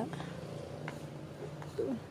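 Low steady hum with a brief spoken word near the end.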